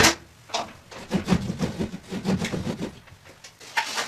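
Handling noises: a couple of sharp knocks, then about two seconds of irregular rubbing and scraping, and another knock near the end.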